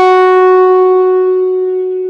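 Hohner Pianet N electric piano played through a fuzz: one struck note rings on, buzzy and rich in overtones, and slowly fades.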